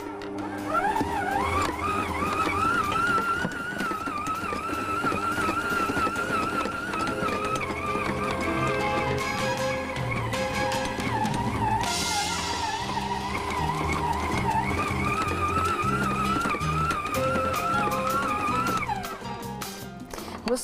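Electric stand mixer running with its dough hook kneading a stiff pastry dough, the motor whine wavering in pitch under the load and stopping just before the end. The dough is still sticking to the sides of the bowl and is being kneaded until it pulls clean. Background music plays underneath.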